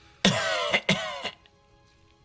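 A gravelly voice gives a raspy, two-part throat-clearing cough, then a faint sustained tone from the score hangs on.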